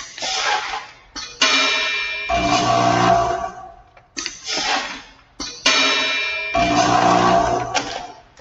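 TE-10 vibratory net-weigh filler feeding dry granular product into a container held under its spout: a run of about six sudden, rattling pours, each trailing off over about a second, with a metallic ringing.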